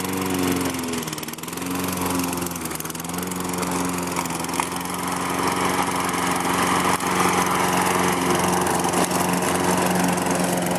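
Gasoline walk-behind push mower engine running: its pitch dips and recovers in the first two seconds, then holds a steady drone.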